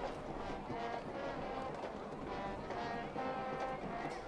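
Brass band music playing faintly in a football stadium, a run of held notes over a steady low background noise.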